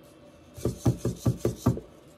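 EMO desktop robot's feet tapping on a wooden desk as it steps round to turn, six quick taps in a little over a second.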